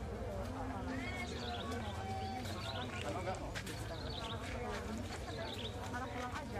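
Crowd of people talking at once, many overlapping voices with no clear words, with a few sharp clicks in the middle.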